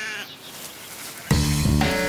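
A sheep bleats, its wavering call trailing off in the first moments. About a second and a half in, background music starts suddenly with low, steady bass notes.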